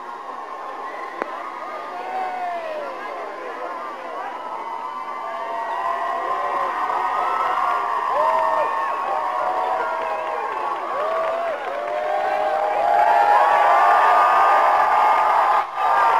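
A large crowd cheering and shouting, many high voices overlapping, building steadily and loudest near the end.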